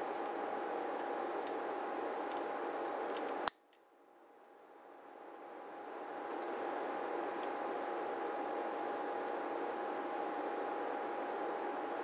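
Electric fan running steadily, a noisy rush with a faint constant hum. About three and a half seconds in there is one sharp click, after which the sound cuts out and fades back up over a couple of seconds.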